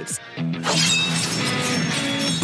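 Anime fight sound effects: a volley of thrown knives striking, a sudden dense crashing burst starting about half a second in over dramatic background music with held low notes.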